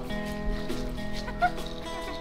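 Background music with long held notes, and a short chirp-like blip about one and a half seconds in.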